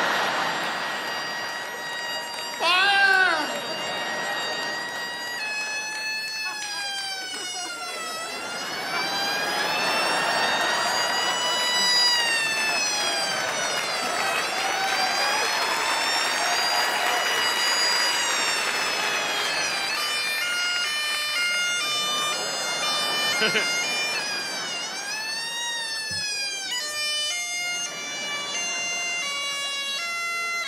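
Highland bagpipes wailing in long, siren-like swoops of pitch over the steady drones. About twenty seconds in they change to a run of separate stepped notes. Audience laughter near the start.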